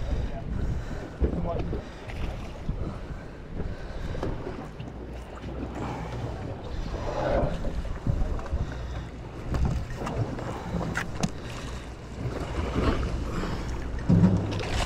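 Steady low drone of a fishing boat's machinery, with wind on the microphone.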